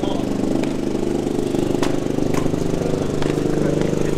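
A small engine running steadily, with a few sharp clicks or knocks over it.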